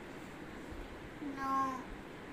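A young girl's voice saying one drawn-out word, "no", about a second and a half in, over quiet room tone.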